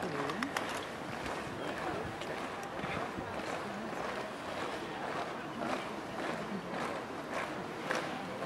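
Background murmur of onlooker voices with scattered sharp clicks and taps of guards' boots on cobblestones.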